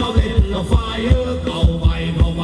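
Thai ramwong dance music from a live band, played loud: a fast, heavy bass-drum beat, several strokes a second, under a sustained melody line.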